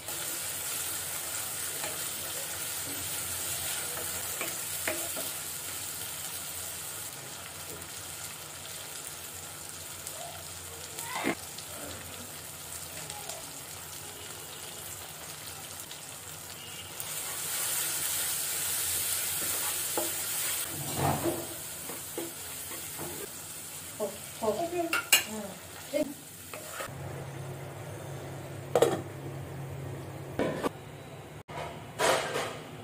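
Hot oil sizzling around battered fritters deep-frying in a pan, loudest for the first several seconds. Partway through the sizzling rises again, and in the last third a spoon knocks and scrapes against the pan as the food is stirred.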